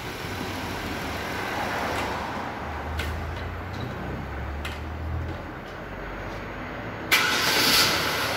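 Car engine running at idle under an open hood, a low steady hum that swells slightly midway. Near the end a sudden loud hiss cuts in over it.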